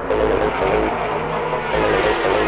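Old-school acid tekno DJ mix played from 1990s vinyl records on turntables: fast electronic dance music with a steady beat.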